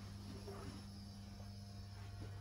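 A faint, steady low hum, like running machinery or electrical equipment.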